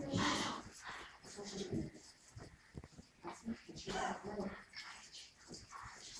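Indistinct murmuring voices and soft shuffling from a room full of children, fairly quiet, with a louder voice-like sound right at the start.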